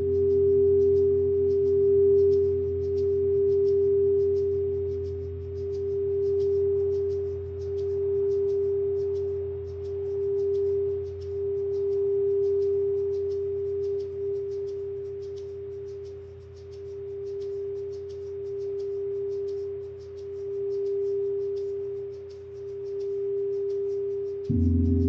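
Frosted quartz crystal singing bowl rimmed with a mallet, holding one steady mid-pitched tone that swells and fades in slow waves over a low hum.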